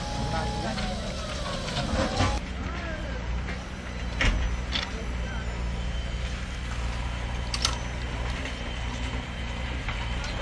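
Steady low engine rumble of heavy machinery at the site, with people talking and three sharp knocks.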